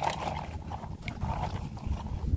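Water sloshing and lapping as a plastic toy dump truck is pushed through it by hand.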